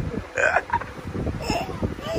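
A small child's short vocal bursts, a giggle or catch of breath, about half a second in and again about a second later.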